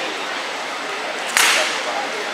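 One sharp crack of a rattan sword blow landing in armoured combat, about a second and a half in, ringing briefly in the large hall over a steady murmur of spectators.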